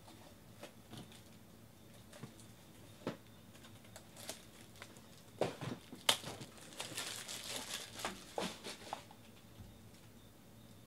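Faint handling noises of trading cards and their plastic packaging: scattered small clicks at first, then a busier stretch of crinkling and tapping in the second half.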